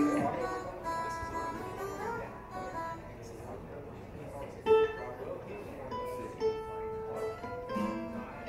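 Acoustic guitar picking a quiet, loose run of single notes.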